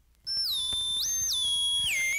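Faint vinyl record crackle, then about a quarter second in an analog synthesizer line starts: a single bright tone that slides up and down between held notes, played from a vinyl LP.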